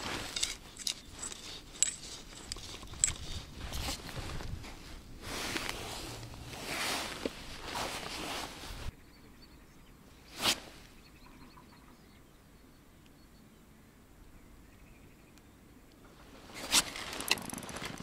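Rustling and scattered clicks of feeder fishing tackle being handled for about nine seconds. Then a quiet stretch with one sharp click, and a few sharp clicks near the end.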